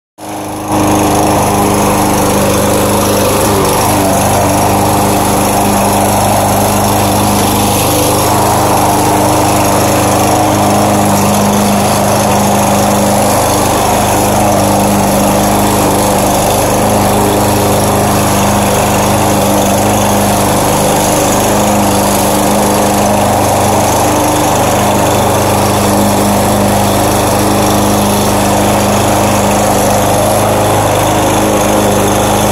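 Craftsman walk-behind lawn mower's Briggs & Stratton Gold 150cc OHV single-cylinder engine running at a steady speed while cutting grass.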